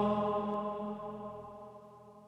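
Gregorian-style chant: voices hold one long chord that fades away.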